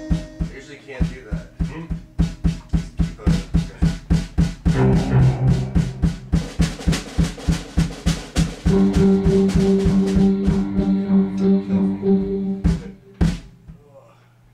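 Live band playing: a drum kit beats a steady pulse under sustained keyboard organ chords. The song stops a little before the end, with a final hit or two.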